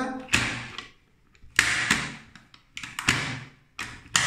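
Three sharp clacks, a little over a second apart, each with a short ringing decay, from the mechanism of a Matis M3EL-250 moulded-case circuit breaker as it is switched by hand.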